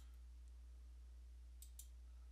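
Near silence with a steady low hum, broken by faint computer mouse clicks: one at the start and two close together near the end.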